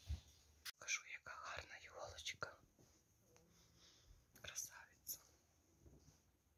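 Quiet whispered talking in two short stretches, with a brief sharp click just before the first.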